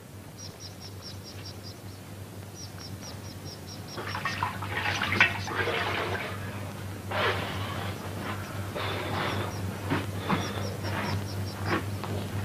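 Water splashing in an enamel washbasin as a man scoops it onto his face with his hands: irregular splashes starting about four seconds in, over a steady low hum.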